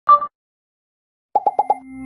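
Sound effects of an animated logo intro: a short bright blip, a second of silence, then four quick pitched pops in a row, about eight a second, running into a low held tone.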